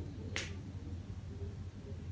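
A single sharp click about half a second in, over a steady low drone.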